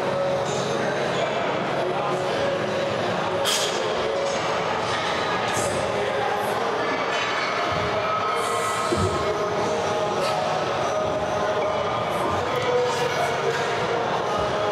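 Gym ambience: steady room noise with music playing over the speakers and distant voices, with a few brief clinks.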